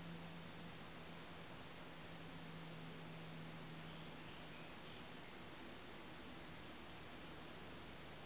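Near silence: faint steady hiss of room tone with a low hum.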